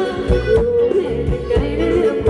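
Live Thai ramwong band music: a wavering high lead melody over a quick, steady drumbeat.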